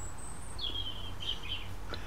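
A small bird chirping faintly: a thin high whistle, then a short run of twittering notes, over a steady low hum.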